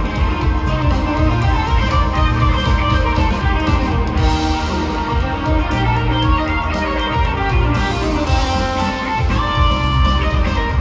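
Live rock band playing an instrumental passage: electric guitar over drums and bass, dense and steady throughout.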